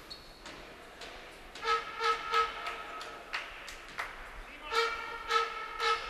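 A horn in the stands blown in repeated short blasts at one steady pitch, in two bursts a few seconds apart, while a free throw is being taken. Between the bursts come a couple of sharp knocks.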